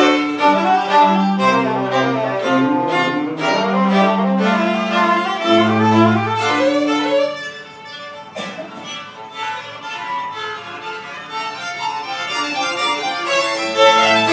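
String quartet of violins and cello playing a fast, busy passage, with quick notes over long held cello notes. About halfway through, the music drops to a quieter passage, then swells back to full volume near the end.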